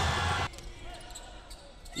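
A basketball dribbled on a hardwood gym floor, heard faintly over quiet court ambience.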